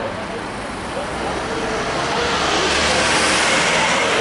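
A car passing on a nearby road: its tyre and engine noise swells to a peak about three seconds in and then starts to fade.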